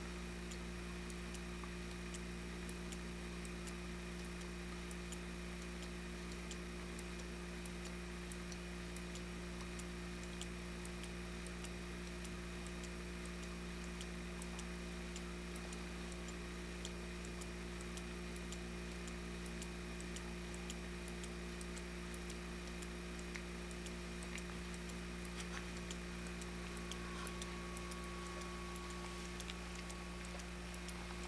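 Homemade all-electromagnet motor running, with reed-switched electromagnets and a spinning rotor of two U-tron coils. There is a steady low hum and a rapid, uneven ticking throughout.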